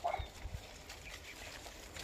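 A single brief animal-like call right at the start, followed by two soft low knocks and faint rustling of leaves.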